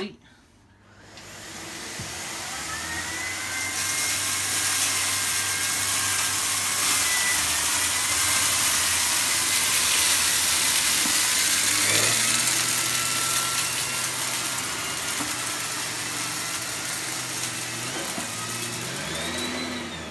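Miele C3 Complete canister vacuum cleaner running at full power with its turbo brush, a steady rushing noise with a faint whine, as the brush is pushed forward and pulled back over carpet strewn with rice, couscous and sawdust. The noise builds up over the first few seconds and its tone shifts about halfway through.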